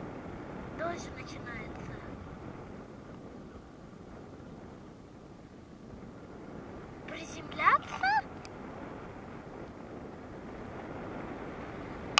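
Steady wind rushing over the microphone of a paraglider in flight, with a person's brief wordless calls, a short one about a second in and a louder pair of rising and falling calls about seven to eight seconds in.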